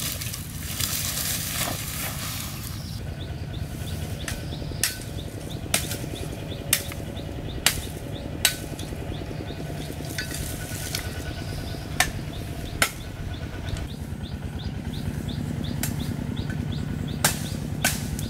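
Dry tree branches snapped by hand: a series of about ten sharp cracks at irregular intervals, with rustling of twigs and brush at the start.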